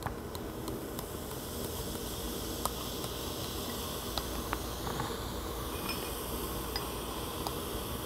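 Baking soda fizzing in a glass of lemon juice and crushed Tums: a steady hiss with scattered small pops as the acid-base reaction gives off carbon dioxide and the foam rises.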